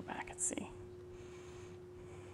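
A person whispering or muttering a word or two, with a sharp 's' sound, in the first half-second. After that only a steady low hum and faint hiss remain.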